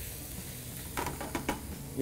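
Chopped gourd sizzling as it fries in oil in a pan, with a few scrapes and taps of a steel spoon stirring it about halfway through.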